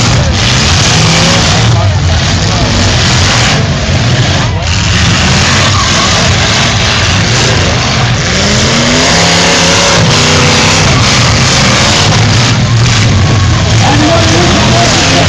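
Several demolition derby cars' engines running and revving hard as they push against each other with their tyres spinning, loud and dense throughout, with crowd voices mixed in.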